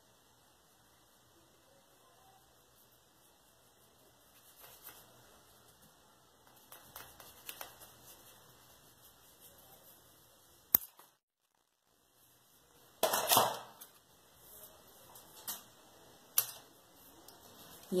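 Scattered clicks and knocks of small tools and clay pieces being handled and set down on a stone worktop, with a sharp click about eleven seconds in and a louder clatter a couple of seconds later.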